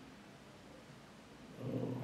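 A pause in a man's speech: faint room tone, then his voice starts again near the end.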